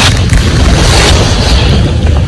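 A heavily boosted outdoor recording playing back: a loud, steady low rumble under a hiss, with a few faint clicks.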